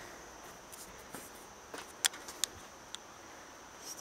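Steady high-pitched insect chorus in the forest, with a few sharp ticks around the middle.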